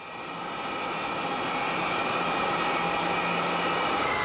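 Steady industrial noise of a steel foundry hall: a dense, even hiss with a faint low hum underneath, fading in over the first second and then holding steady.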